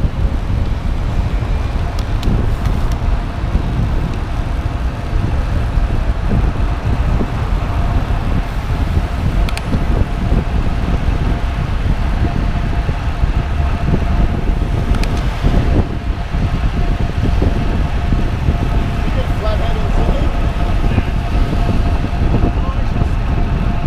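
Wind rushing over an action camera's microphone on a road bicycle riding at speed, with road traffic mixed in.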